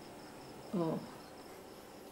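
Faint, steady high-pitched chirring of crickets in the background. About three-quarters of a second in, a woman gives one brief murmur with falling pitch.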